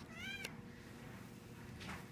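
A kitten giving one short, high-pitched mew at the start.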